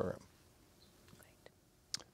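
The last syllable of a man's spoken word, then near silence: studio room tone, with a single short click just before the end.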